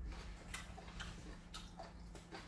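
A person chewing food, with about three short, soft mouth clicks over a faint steady hum.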